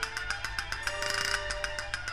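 Castanets playing a fast run of crisp clicks, about ten a second, over a soft held note or two from the chamber orchestra.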